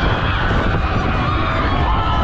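Wind rushing over the microphone of a camera riding a Technical Park Heavy Rotation funfair ride: a loud, steady rumble, with faint wavering higher tones over it.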